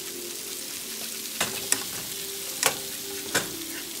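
Salmon fillets and shrimp sizzling in a frying pan: a steady frying hiss, broken by four sharp clicks over the last two and a half seconds.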